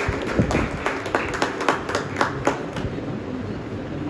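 Scattered hand clapping from a small group, about three or four claps a second, dying away near three seconds in, over a steady background hum.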